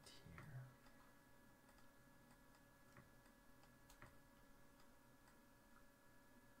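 Near silence: faint room tone with a steady electrical hum and a few faint, sparse clicks of a computer mouse.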